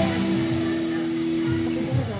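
Live rock band heard from the crowd through the stage PA, with one long held guitar note ringing over a haze of band and crowd noise as a song begins.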